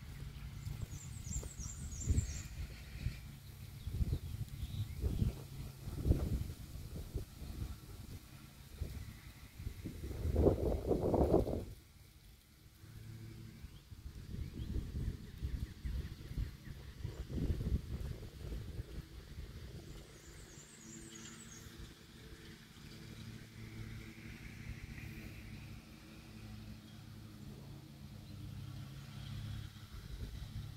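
Outdoor ambience of someone walking with a handheld camera: low footfall and handling thumps, a louder rushing swell of wind or passing traffic about ten seconds in, and a bird's short high chirps twice.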